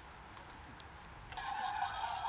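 Handheld megaphone keyed on between phrases: after near silence, a faint steady hiss with a thin hum starts about two-thirds of the way in, its sound cut off below the middle range like the megaphone's voice.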